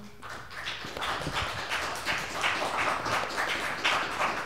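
Audience applauding, the clapping starting just after the beginning and continuing steadily.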